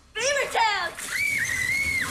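A girl shouting her battle cry "Beaver tails!" in a high voice, two short falling calls followed by a long, high-pitched scream held for about a second.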